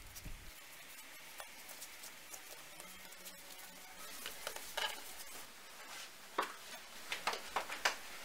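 Soft rustling of hands rolling pieces of yeast dough into balls on a floured wooden board, with a few light taps as the balls are handled and set down, more of them in the second half.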